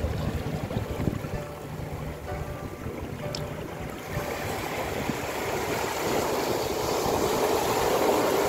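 Sea surf washing over a rocky shore, growing louder through the second half, with low wind rumble on the microphone in the first half.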